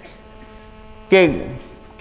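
Steady electrical mains hum, a quiet buzz of several even tones, heard through a pause in a man's speech, with one short spoken syllable about a second in.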